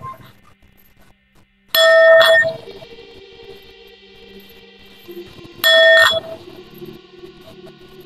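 Tibetan singing bowl held on the palm and struck twice with its mallet, about four seconds apart. Each strike rings out loudly with a clear tone and higher overtones, then hums on softly until the next.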